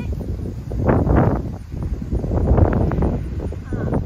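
Wind buffeting the microphone in gusts, with a few bird chirps near the end.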